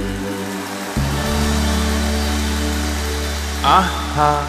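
A large live band holds a steady sustained chord, with a low bass note coming in about a second in. A voice enters near the end.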